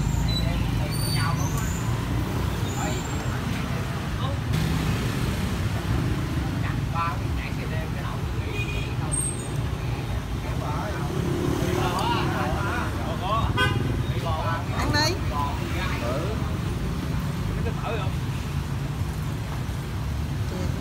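Steady street traffic noise of passing motorbikes and cars, a constant low rumble with an occasional horn toot, and people talking in the background.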